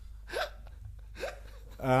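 A lull in a conversation between men: two short voice sounds, then a man begins a drawn-out "um" near the end.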